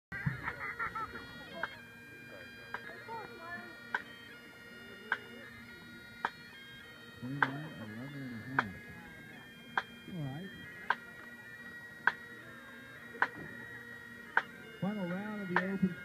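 Sharp single drum-stick clicks at a steady beat of about one a second, over faint distant bagpipe tones. A voice talks briefly in the middle, and a public-address voice begins near the end.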